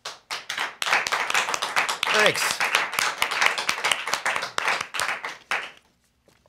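A small audience applauding after a song ends, with steady clapping that thins out near the end. A short falling vocal cheer cuts through about two seconds in.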